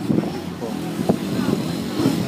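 Men's voices talking indistinctly, with a brief sharp knock about a second in.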